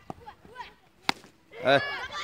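A single sharp crack of a cricket bat striking the ball about a second in, followed by a shout.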